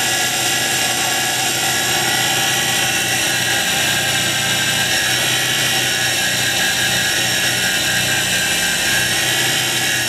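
Wood lathe motor running at a steady speed with a constant whine, spinning a wooden dart blank while it is hand-sanded.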